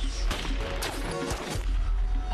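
Film soundtrack of a street shootout: several sharp gunshots and impacts over a tense music score with a deep low rumble.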